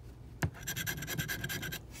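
A scratch-off lottery ticket's coating being scraped away in a quick run of short, rapid scratching strokes, after a single tap about half a second in.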